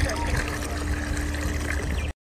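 Liquid poured from a plastic bottle into pool water, a steady trickle splashing onto the surface, with a steady low hum underneath.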